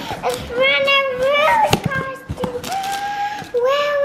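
A young girl's drawn-out, sing-song vocalizing, several long held notes that glide up and down without clear words, over the crackle and snaps of a cardboard box being pulled open.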